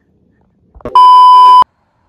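A single loud, steady electronic beep tone, lasting under a second, about a second in, like an edited-in censor bleep.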